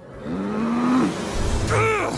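Comic sound effect of a car engine revving: a rising rev in the first second, then a low steady rumble. A brief voice-like sound comes near the end.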